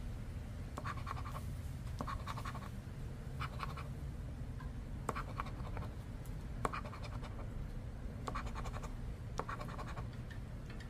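Short bursts of scratching, roughly one a second, as a coin rubs the latex coating off the number spots of a scratch-off lottery ticket, one spot at a time.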